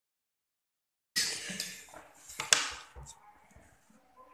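Origami paper rustling and being handled on a tabletop, starting about a second in and fading out, with one sharp tap about halfway through as a pen is set down on the table.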